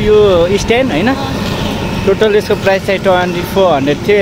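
Speech only: a man talking in lively, continuous conversation, over a steady low background rumble.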